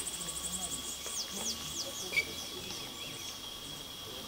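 Wild birds calling: a fast high trill, then a few quick high notes that slide downward, and one sharper chirp about two seconds in. Under them runs a steady high insect drone and faint distant talk.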